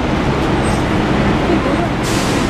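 Steady low rumble of city street traffic, with indistinct voices of a crowd beneath it.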